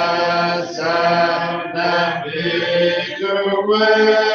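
A congregation singing a slow hymn a cappella, unaccompanied voices holding long notes that change about once a second, with brief breaths between phrases.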